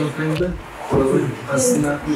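People talking, the words not clear enough to make out.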